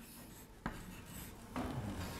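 Chalk writing on a blackboard, faint: a single sharp tap of the chalk on the board about two-thirds of a second in, then scratchy chalk strokes in the last half second.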